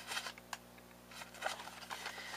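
Handmade paper greeting cards being handled: a few short rustles and light taps of card stock over a faint steady hum.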